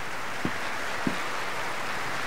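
Steady hiss of background noise with two faint small clicks, about half a second and a second in.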